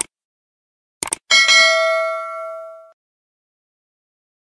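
Mouse-click sound effect: a click at the start, then two quick clicks about a second in. A bright notification-bell ding follows at once, ringing with several overtones and fading out over about a second and a half.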